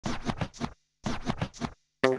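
Scratching sound effect opening an intro music sting: two identical phrases of four quick strokes, each under a second long, separated by a short silence.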